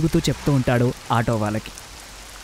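A voice speaking Telugu in story narration, breaking off about a second and a half in, over a steady faint hiss.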